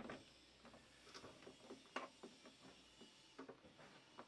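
Near silence with a few faint clicks, from the roof vent fan's crank handle and lid being worked by hand; the clearest clicks come about one and two seconds in.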